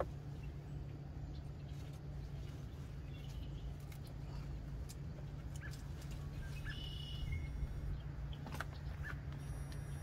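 A steady low hum with faint, occasional bird chirps, and light scattered clicks and rustles from zucchini leaves and stems being handled.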